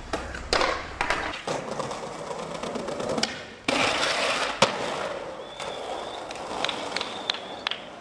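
Skateboard on a stair ledge: a few sharp clacks of the board, then the board sliding down the ledge for about a second, ending in a hard landing clack and wheels rolling away.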